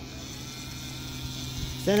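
Battery-powered toy bubble gun's small electric motor running with a steady hum.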